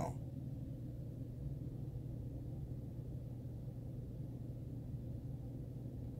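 Steady low background hum of room tone, with no distinct events.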